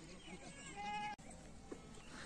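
A herd of goats bleating faintly, with one clear bleat just before a second in.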